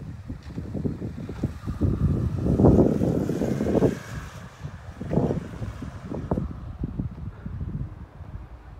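Wind buffeting the microphone in uneven gusts, strongest about two to four seconds in.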